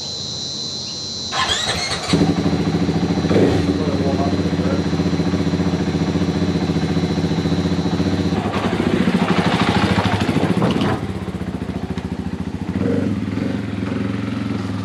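Dirt bike engine starting up in the first couple of seconds, then running and revving up and down several times. It eases off around eleven seconds and picks up again near the end. A steady insect buzz is heard at the start.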